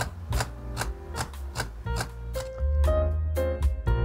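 Olympus OM-D E-M1 Mark III's mechanical shutter firing in a held continuous-high burst, a steady run of clicks at about two to three a second, slowed because the buffer is full.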